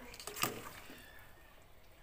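A single short knock about half a second in, a steel ladle against the side of the soup pot, followed by faint low background hiss.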